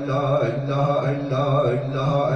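A man chanting 'Allah' over and over in a steady rhythm, about two repetitions a second, as devotional zikr into a microphone.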